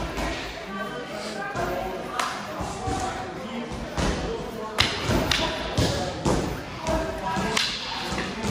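Irregular sharp knocks and thuds of rattan-stick sparring, about one a second, as the sticks strike sticks, padded gloves and armour. Faint music plays underneath.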